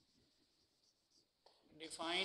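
Faint marker strokes on a whiteboard as words are written by hand, soft scratches in short irregular runs. A man's voice begins just before the end.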